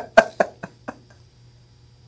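A woman's laughter tailing off: a few short 'ha' pulses, getting quieter and further apart, dying out about a second in.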